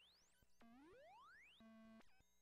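Faint electronic chirps from a Buchla 200e modular synthesizer: tones sweeping upward in pitch, one long rise climbing from low to high over about a second, with a few clicks, then settling into a steady pitched tone near the end.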